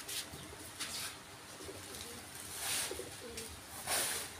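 A dove cooing faintly, with a few soft rustling noises.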